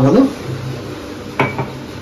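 A single sharp clink of a drinking glass being set down on a hard kitchen surface, about one and a half seconds in, ringing briefly.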